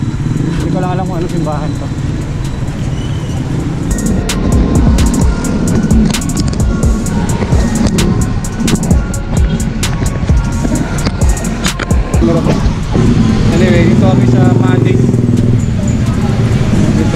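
Busy street traffic with motor vehicle engines running. In the middle comes a run of sharp knocks and rubbing, typical of the action camera being handled.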